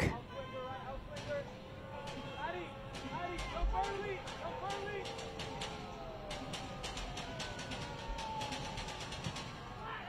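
Soccer players shouting and calling to one another on the pitch while a set piece is awaited, including a few long drawn-out calls, with scattered short clicks over the stadium background.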